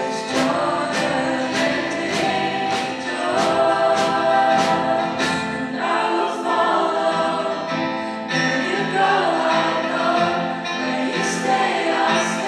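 Live contemporary worship song: women's voices singing with a strummed acoustic guitar and band, a regular beat about every 0.6 s through the first five seconds.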